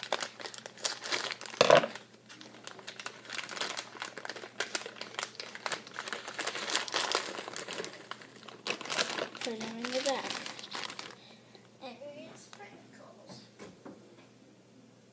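A plastic bag of chocolate chips crinkling as it is handled and opened. Dense, irregular crackling goes on for about eleven seconds, then turns to fainter, sparser rustles.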